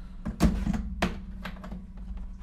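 Handling knocks in a hard plastic tool case as a rotary tool's flexible shaft extension is set into its slot: a loud thunk about half a second in, a sharper click about a second in and a few light taps, over a steady low hum.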